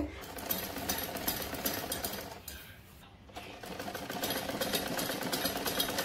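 Domestic sewing machine running, stitching a seam in satin fabric with a fast, even patter, in two runs with a short stop about two and a half seconds in.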